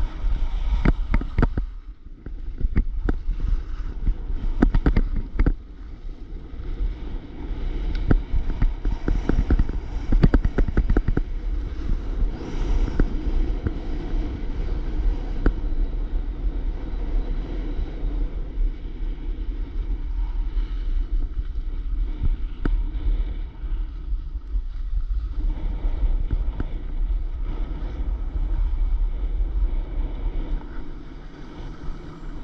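Wind rumbling on a ski-mounted or body-worn camera's microphone while skiing down a groomed run, over the scrape of skis on packed snow. Frequent sharp clicks and knocks over the first ten seconds or so, fewer later.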